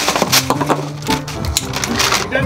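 Plastic wrapping on an inflatable kayak crinkling and crackling as it is pulled out of its carry bag, in quick irregular crackles. Background music with a steady bass line runs underneath.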